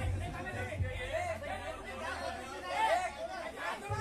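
Several people talking and calling out at once: the overlapping chatter of a gathered crowd.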